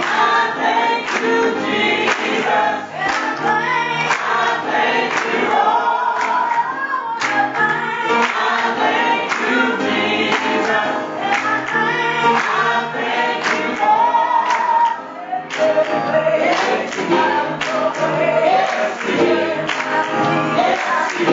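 Gospel song sung by a choir and congregation, with piano accompaniment and steady rhythmic hand-clapping.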